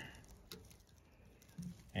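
Near silence: quiet outdoor background with a single faint click about half a second in.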